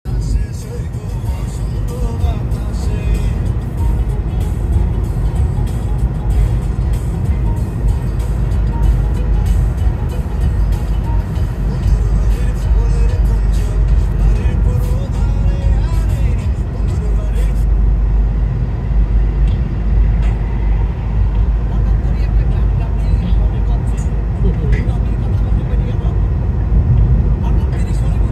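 Steady low rumble of a moving car heard from inside the cabin: road and engine noise while driving.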